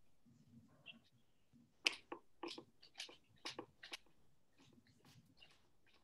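Faint, irregular soft taps, about two a second from a couple of seconds in, of a crumpled paper towel being dabbed onto a painted canvas.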